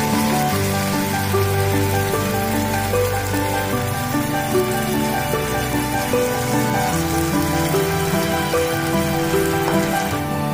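Battered cauliflower florets sizzling steadily as they deep-fry in hot oil, under background music of held notes.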